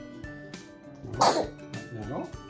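A toddler's brief, loud, cough-like vocal burst about a second in, with a weaker one near the end, over light background music.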